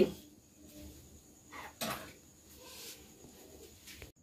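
Quiet room with faint handling noise and one short knock a little under two seconds in.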